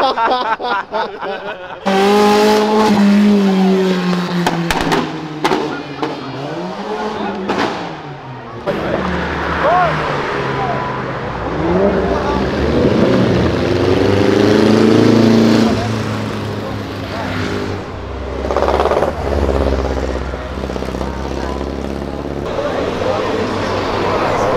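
Car engines revving and accelerating as several cars drive past one after another, the engine note falling, then climbing again, with people's voices around.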